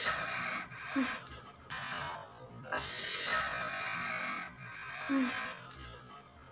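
Breathy gasps and huffs from a man's wide-open mouth as he reacts to the burn of hot chili peppers, with a longer hissing breath out starting about three seconds in.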